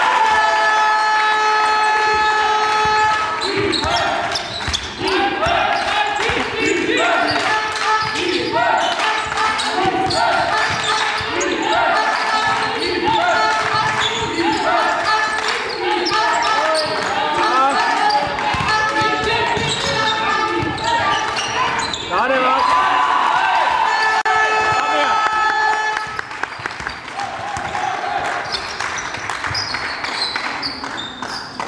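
Basketball game in a sports hall: a ball bouncing on the court under spectators' voices, which come in a steady rhythm of about one call a second through the middle of the stretch. A sustained horn-like tone sounds at the start and again about 24 seconds in.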